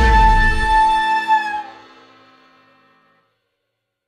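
Closing held chord of a pop song ringing out and dying away to silence about two seconds in.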